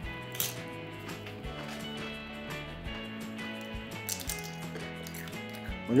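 Soft background music with held notes, under a few faint crunches of tortilla chips being bitten and chewed.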